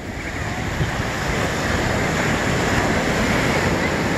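Ocean surf breaking and washing up the beach, a steady rush of water, with wind buffeting the microphone.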